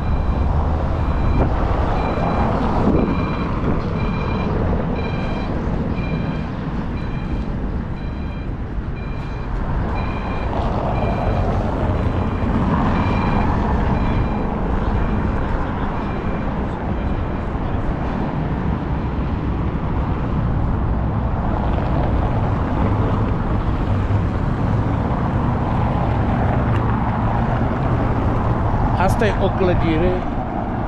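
Short electronic beeps repeating evenly, a little under two a second, fading out after about 17 seconds, over a steady low rumble of city street traffic.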